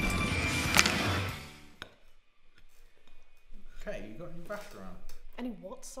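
Dense, tense film score with a sharp hit a little under a second in, fading out by about two seconds. After a short lull, quiet conversation around a dinner table.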